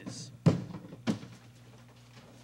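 Two thunks about half a second apart, the first the louder, as a hand grabs and lifts a small drum prop off the pavement. A steady low hum runs underneath.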